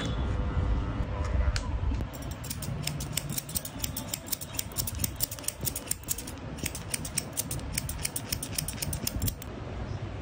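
An electric hair clipper buzzes on the nape and cuts off about a second and a half in. Then barber's scissors snip rapidly and steadily, many short snips, through hair lifted on a comb.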